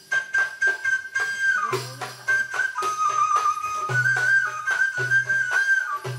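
Live Middle Eastern ensemble music for belly dance. A high, sustained melody line holds notes and steps between pitches over steady percussion strokes and short low bass notes that recur about once a second.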